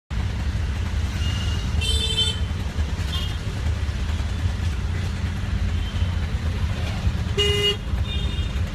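Road traffic: a steady low engine and road rumble, with vehicle horns tooting briefly several times, the longest about two seconds in and another near the end.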